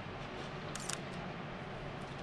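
Outdoor street ambience, a steady low background noise, with a brief quick cluster of sharp high-pitched clicks or squeaks just under a second in.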